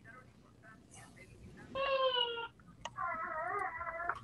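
A domestic cat meowing twice: a short, slightly falling call about two seconds in, then a longer, wavering call about a second later.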